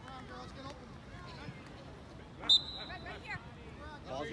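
A referee's whistle blown once, a short high blast about two and a half seconds in, over faint distant voices from the field and sideline.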